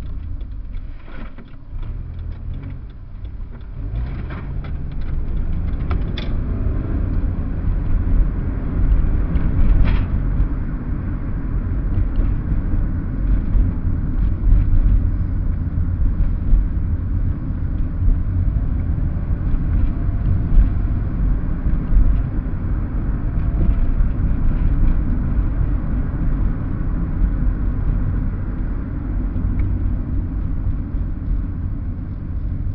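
Inside a car, engine and tyre road noise. The car pulls away from a stop with the engine note rising over the first few seconds, then settles into a steady low rumble while cruising.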